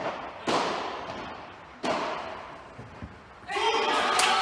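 Padel ball being struck during a rally: three sharp hits, at the start, about half a second in and just before two seconds, each ringing out in the large hall. Near the end, spectators' voices rise into cheering.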